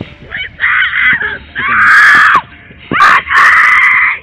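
A woman screaming: three long, loud screams about a second apart, the middle one dropping in pitch as it ends.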